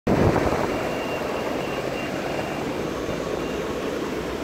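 Steady rolling rumble of electric skateboard wheels on asphalt, slightly louder in the first half second, with a faint thin high tone that comes and goes.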